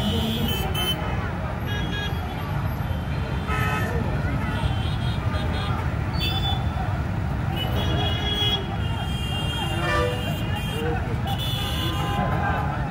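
Street crowd: indistinct voices and shouting over a steady traffic rumble, with vehicle horns tooting several times.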